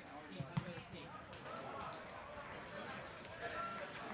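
Players and spectators calling out and talking over each other at a football ground, with two sharp thuds of a football being kicked about half a second in.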